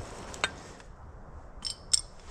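A sharp click, then a few light clicks and a short clink near the end: small hard objects being handled, like camp cutlery, cups or cookware.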